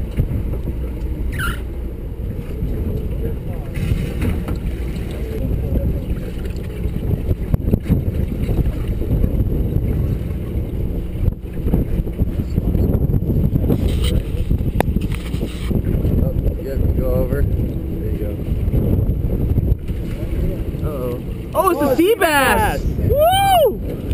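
Steady low rumble of a sportfishing boat's engine with wind on the microphone and water against the hull. A few calls with swooping, rising-and-falling pitch come near the end.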